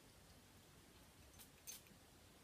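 Near silence, broken by two short, faint hisses in quick succession about a second and a half in.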